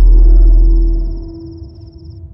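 Film score: a deep, loud low drone dies away over about a second and a half, leaving a held ringing tone and a faint high wavering tone above it.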